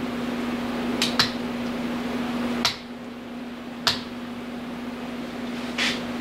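A steady low hum that cuts off about two and a half seconds in, with a few sharp metallic clicks and knocks from tools being handled at the workbench.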